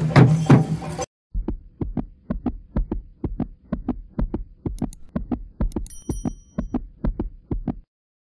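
Procession drumming that cuts off about a second in, followed by a steady heartbeat-like thumping of about three beats a second, with a click and a short chime near the middle: the sound effects of an animated subscribe-button end screen.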